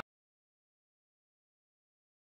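Silence: the sound track is empty.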